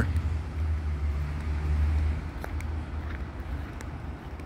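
Low rumble of road traffic, strongest about two seconds in and then fading.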